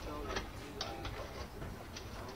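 A few scattered clicks of laptop keys under faint, indistinct voices.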